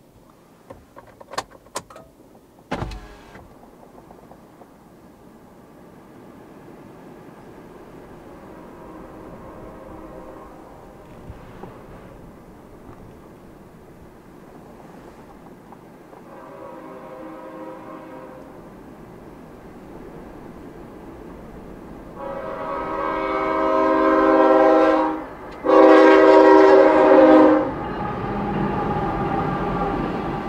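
CSX freight locomotive's air horn sounding for a grade crossing: two faint, distant long blasts, then two long, loud blasts as it reaches the crossing, followed by the rumble of freight cars rolling past. A few sharp clicks near the start.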